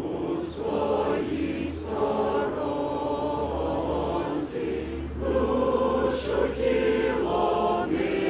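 A choir singing slowly in harmony: long held chords, several voices together, broken by short pauses between phrases.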